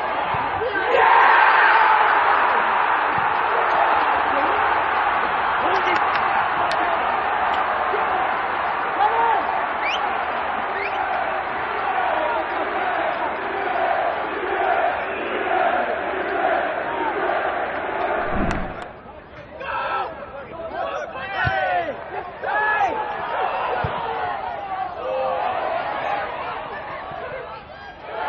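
Football stadium crowd roaring as a goal goes in, the noise surging about a second in and holding loud. It then settles into rhythmic chanting. Near the end the roar breaks off and scattered individual shouts are heard.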